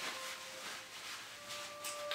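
Faint background music of soft, pure-sounding sustained notes that shift in pitch about every second, over a low hiss.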